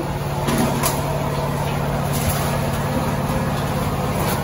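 A steady, low mechanical hum from a running motor, holding an even level throughout.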